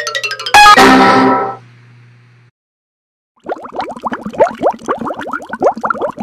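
Logo jingle: a quick descending run of notes ending in a loud ringing chord that fades out within a second. After a short silence, a bubbling sound effect of rapid rising blips starts about three and a half seconds in.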